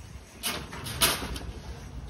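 Brief scraping and rustling from pumpkins being handled in a cardboard bin, heard twice, about half a second and a second in, over a low rumble.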